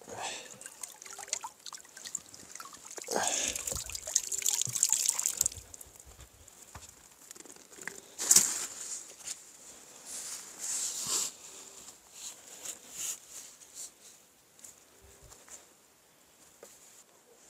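Lake water splashing and trickling as a landing net is lifted out of the water, with a longer pouring rush a few seconds in and a sharp knock of handled gear about halfway through.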